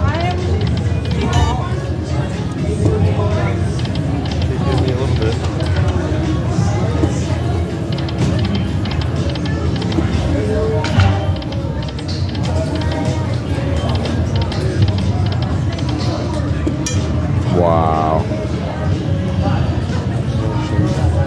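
Casino floor ambience: slot-machine music and electronic jingles over background chatter and a steady low hum, with a brief warbling electronic tone about two seconds before the end.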